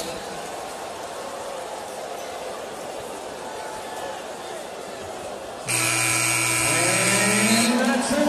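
Steady arena crowd noise, then, near the end, a loud arena buzzer sounds for about two seconds and cuts off abruptly, with a man's voice over it.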